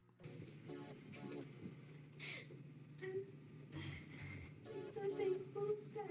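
Quiet music with a young woman crying softly, with several short sniffs and breaths through it.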